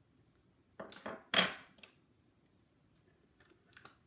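Clear acrylic stamp block and stamping tools knocking and clattering on a tabletop: a few short knocks about a second in, the loudest just after, then a few light clicks near the end.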